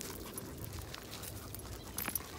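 Faint, irregular footsteps and dog paws on a gravel path.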